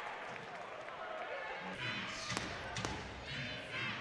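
Basketball arena sound during play: a low, steady crowd murmur, with a couple of sharp ball bounces on the hardwood court a little past halfway.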